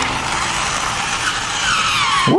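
Two battery-powered toy cars running across a tabletop: a steady whirring of their small motors and gears, with a faint rising whine near the end.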